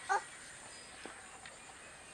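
A hen gives a single short cluck just after the start, over faint outdoor background with thin distant chirps.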